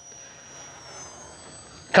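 Electric brushless motor and propeller of a small FMS F4U Corsair RC plane whining faintly high overhead, its pitch falling slowly.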